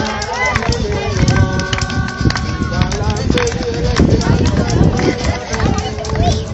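Several people's voices talking and calling out over one another, over a constant low rumble. A held higher note sounds for over a second about a second and a half in.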